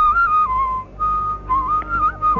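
Carnatic bamboo flute playing a melodic phrase with quick wavering ornaments between neighbouring notes. It breaks off briefly a little under a second in, then picks up again.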